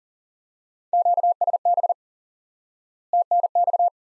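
Morse code sent at 40 words per minute as a keyed single-pitch beep in two quick groups, about a second in and about three seconds in. The groups spell the two abbreviations QSB (signal fading) and TNX (thanks).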